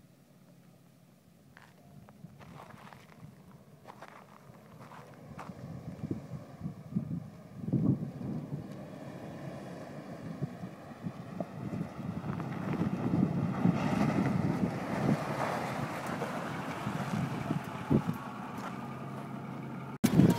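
Ford F-150 pickup truck driving across loose desert sand toward the microphone, its engine and tyres rising from faint to loud over the first dozen seconds, with wind on the microphone.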